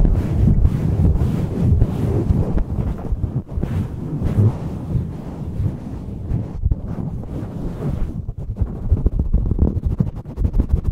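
Fingers scratching and rubbing fast and hard over a furry windscreen fitted on a condenser microphone, giving a dense, rumbling scratch right on the mic. Near the end the strokes come through more separately.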